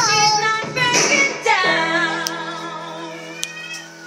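A young girl singing in a high voice along with a pop song, ending on a long held note that slowly fades away.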